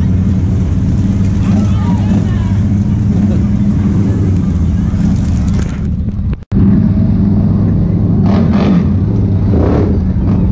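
Side-by-side UTV engine running steadily at low speed, a constant low hum, with faint voices in the background. The sound cuts out abruptly for an instant about six and a half seconds in, then the engine hum resumes.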